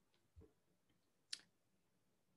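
Near silence: room tone, with a faint soft thump about half a second in and one short, sharp click a little past the middle.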